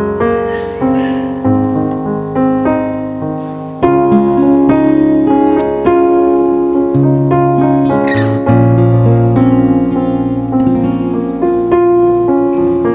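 Electric keyboard playing slow, sustained chords of a worship song with no singing, the chords changing every second or two; it gets louder about four seconds in.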